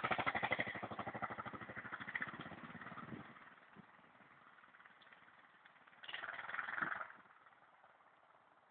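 Armstrong MT500 single-cylinder four-stroke trail bike engine riding away, its rapid, even exhaust beat fading out over the first three seconds. A short rise of engine noise follows from the same bike in the distance, about six seconds in.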